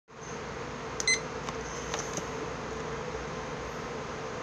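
A digital stopwatch gives one short, high beep about a second in, followed by a few faint clicks, over a steady low room hum.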